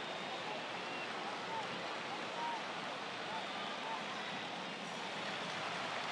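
Steady field-microphone ambience of a stadium with empty stands, with no crowd noise, and a few faint, distant shouts from the players on the pitch.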